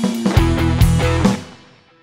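Rock band playing electric guitar, bass and drums with heavy, regular drum hits. About a second and a half in, the band stops together and the last chord rings away to near silence.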